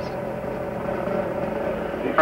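A steady, even hum with a faint held tone and no distinct events.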